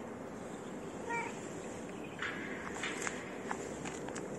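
Footsteps scuffing and clicking on the ground, several steps in the second half, over steady outdoor background noise. About a second in there is one brief high-pitched call.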